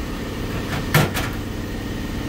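Steady low mechanical hum, with one short sharp knock or click about a second in.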